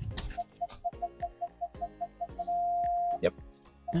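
2007 Volvo V70's rear parking-assist warning beeping: short beeps at about five a second that run together into one continuous tone for under a second, the close-obstacle warning, showing the newly fitted rear parking sensors are working.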